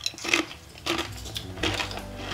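A few light clicks and taps of crisp crackers being handled and set down.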